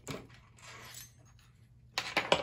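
Faint handling noise: a soft rustle and light clink as a small SCR voltage controller circuit board and its wires are picked up off the bench, with a sharp click at the very end.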